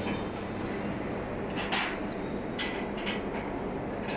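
Steady mechanical hum and rumble of factory machinery, with a few faint knocks.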